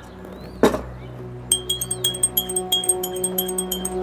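Teaspoon clinking rapidly against a small glass of tea as it is stirred, several clinks a second from about a second and a half in, over soft background music. A single knock comes about half a second in.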